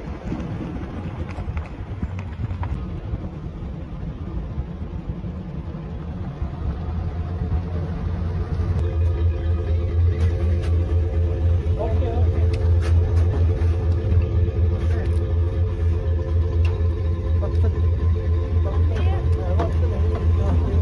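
Vehicle engine running: a low rumble at first, then from about eight seconds in a louder, steady low hum. People talk faintly in the background.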